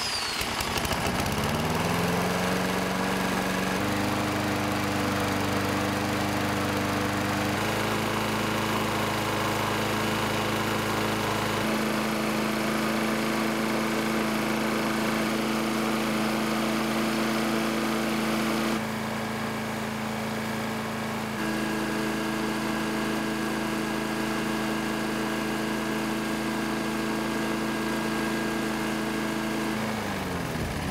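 Toro Recycler lawn mower's single-cylinder engine starting up, rising to speed over the first two seconds, then running steadily at a fixed throttle with its governor disconnected, so that its speed rests only on internal friction, here with plain 10W-30 oil. The steady tone jumps slightly a few times.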